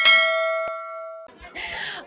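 Notification-bell chime sound effect: a bright metallic ding of several ringing tones that fades and cuts off just over a second in, with a single click partway through. A short burst of hiss follows.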